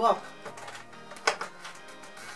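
A few light taps and one sharp click, about a second in, from a cardboard Kinder chocolate advent calendar being handled, over quiet background music.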